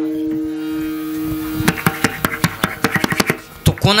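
Kirtan accompaniment: a harmonium holds a steady chord, then a quick run of sharp drum strikes and clicks fills the second half, ending on one loud strike.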